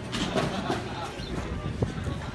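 Background chatter: indistinct voices of people nearby over outdoor street noise, with one sharp click near the end.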